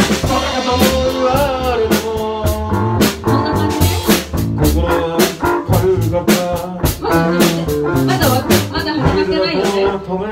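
Loud band music with a steady drum-kit beat, guitar and a wavering melody line.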